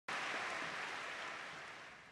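Audience applauding, fading steadily as it dies away.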